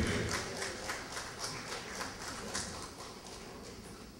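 Light, scattered hand clapping from a small audience, dying away over a few seconds.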